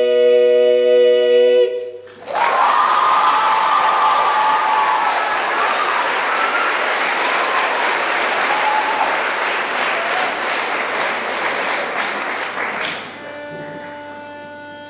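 Female barbershop quartet singing a cappella, holding its final chord, which cuts off about two seconds in. Audience applause with cheering follows and fades near the end.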